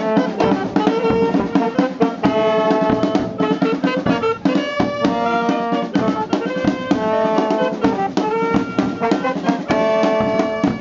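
Street wind band playing a tune live, with a clarinet close by, brass including sousaphone and trombone, and snare and bass drums beating steadily throughout.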